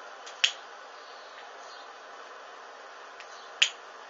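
A disposable lighter struck twice, two sharp clicks about three seconds apart, over a steady faint hiss.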